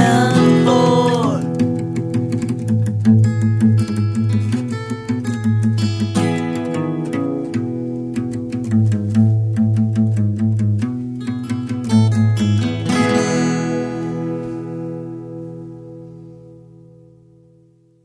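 Acoustic guitar playing the song's outro, picked and strummed chords in a steady rhythm, ending on a final strummed chord about thirteen seconds in that rings out and fades away.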